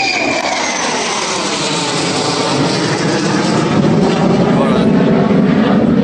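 Military fighter jet flying low overhead: loud, continuous jet engine noise whose tones slide down in pitch as it passes, growing heavier and lower toward the end.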